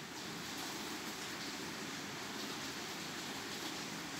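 Steady, even background hiss of room noise, without distinct knocks or clinks.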